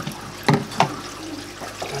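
Water pouring from an aquarium top filter's plastic inflow pipe and splashing into the filter tray, where the filter wool sits submerged in water. Three sharp plastic knocks, at the start and about half a second and just under a second in, as the pipe is handled.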